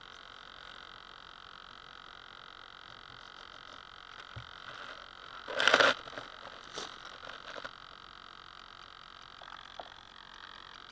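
A steady, high buzzing tone made of several pitches at once, with a fine pulsing texture, running on without a break. About six seconds in, a short loud rustle or knock covers it.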